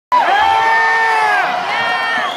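Concert audience cheering, with one high voice holding a long whoop for over a second that falls away at the end, then a second, shorter whoop near the end.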